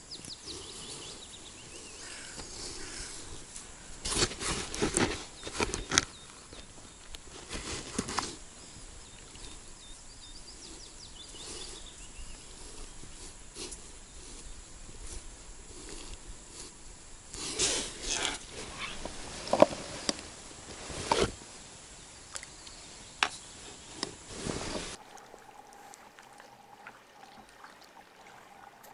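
Hands working close to the microphone while pressing a dough pellet onto a small fishing hook, heard as scattered short rustles and clicks over a steady outdoor background. Near the end the sound cuts to a quieter background with a faint steady tone.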